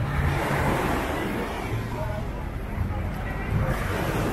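Crowd chatter on a busy beach, under a rushing noise that comes in suddenly at the start and dies down near the end.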